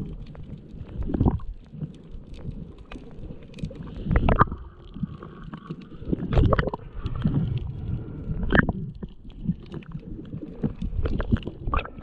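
Muffled underwater rumbling and water movement heard through a submerged camera's housing, with irregular louder surges every two seconds or so.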